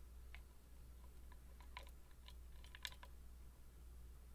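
Faint, scattered metallic ticks and clicks of a hook pick working the pins inside a West 917 cylinder lock, a handful of small taps with the sharpest near three seconds in.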